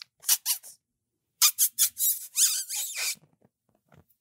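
A run of high-pitched squeaks and chirps: a couple of short ones near the start, then a quick burst of them in the middle. The noise is made to catch a puppy's attention so it perks its ears for a photo.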